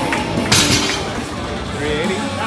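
Loaded barbell with bumper plates lowered back to the lifting platform after a deadlift lockout: a sharp clatter about half a second in that fades quickly. Voices carry on around it.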